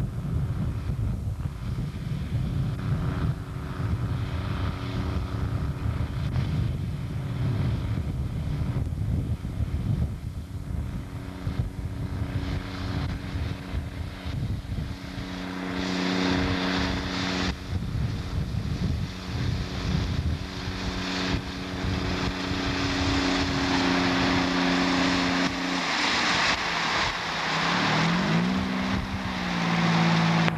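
Diesel engine of a railway ballast regulator running as the machine works along the track, with a rushing hiss over it that grows louder in the second half. Near the end the engine note drops and then climbs again.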